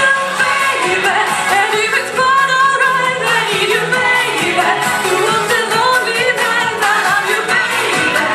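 A solo woman singing a melodic line into an amplified hand-held microphone, over musical accompaniment.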